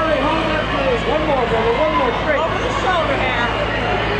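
A crowd of young fans shouting and calling out over one another, their voices rising and falling in pitch, over a steady low hum.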